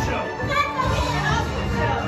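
Several voices at once, overlapping with one another over music in a large room.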